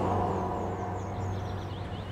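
Outdoor city ambience: a steady low rumble of distant traffic with a run of faint, quick bird chirps in the first part.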